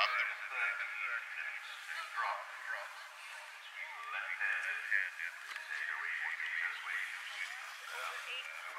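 Quiet, tinny speech from the cross-country commentary, thin as if heard over a radio, running on in broken phrases.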